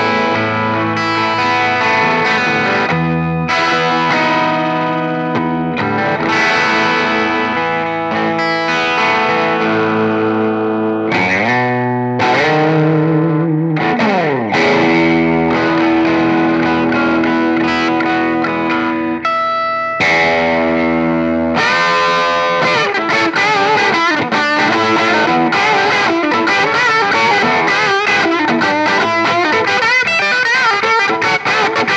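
Overdriven electric guitar lead: a 2015 Gibson Les Paul Junior with its single P-90 pickup through a Fender Silverface Deluxe Reverb tube amp. Long sustained notes and string bends, turning to busier, faster playing about two-thirds of the way in.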